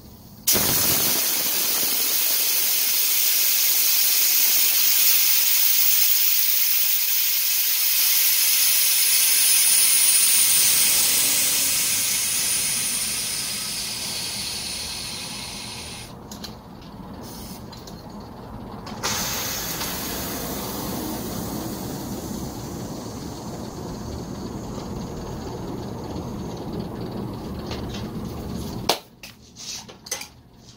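Compressed air hissing out of a low-noise oil-less air compressor's tank as it is bled empty before repair: a loud hiss that slowly weakens, stops for a few seconds about halfway, then comes back weaker until just before the end.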